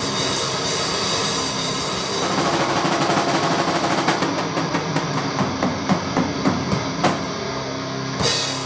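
Live rock band playing: distorted electric guitars, bass guitar and drum kit, loud and dense. From about halfway in, the drums hit about three times a second, and the top end thins out shortly before the end as the band builds into the next section.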